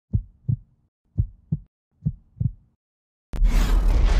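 Heartbeat sound effect: three slow double thumps, just under a second apart, then a short pause and, near the end, a sudden loud boom with a deep rumble that carries on.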